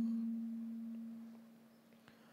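A single held note left over from the end of a sung worship line, one steady tone fading away to near silence about a second and a half in.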